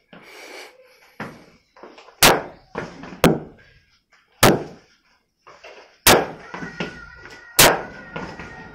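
Cricket bat striking a hanging cricket ball in repeated back-foot defensive strokes: five sharp knocks roughly one to one and a half seconds apart, with fainter taps between.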